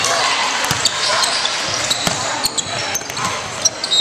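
A basketball being dribbled on a hardwood gym floor, with irregular sharp bounces and other players' footfalls, over indistinct crowd voices echoing in a large gymnasium.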